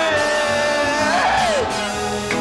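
A rowdy novelty song playing: a singer holds one long note over the backing music, then the voice slides up and down in pitch about halfway through.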